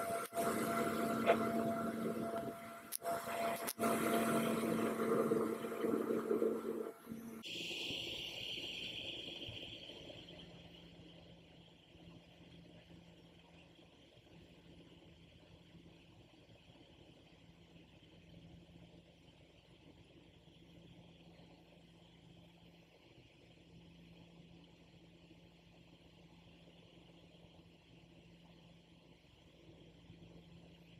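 Small aircraft's engine and propeller drone heard from inside the cabin, steady with a few clicks. About seven seconds in it cuts off abruptly, leaving only a faint steady hiss and low hum.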